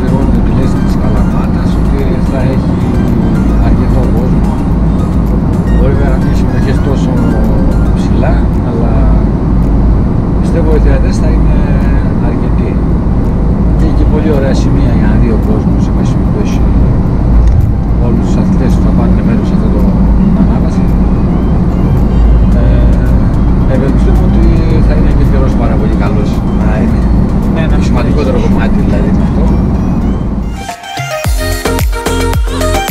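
Steady road and engine noise inside the cabin of a car driving at speed, under men talking and background music.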